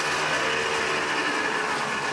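A steady mechanical drone with a high whine over it, a machine or engine running at constant speed.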